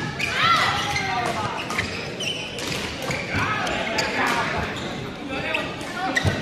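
Badminton rally in a large indoor hall: several sharp cracks of rackets striking the shuttlecock, with footwork and voices echoing in the background.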